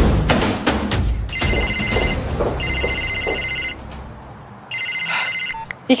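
Mobile phone ringing: an electronic ring that sounds three times, each ring about a second long with short pauses between. Dramatic music with percussive hits plays before the first ring and dies away as the ringing starts.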